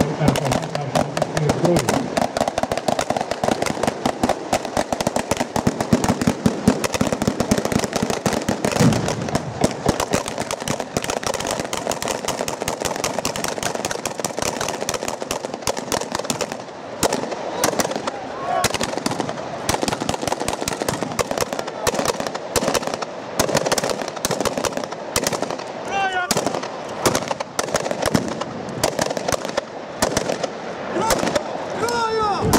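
Rapid gunfire from several assault rifles, shots coming close together and overlapping in dense volleys. It is blank fire in a staged tactical demonstration. The shooting thins into more scattered bursts after about sixteen seconds.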